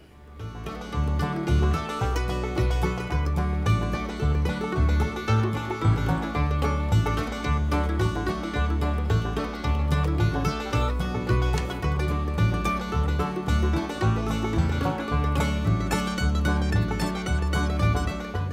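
Background music with a steady, repeating bass beat, played over the sped-up footage; no speech.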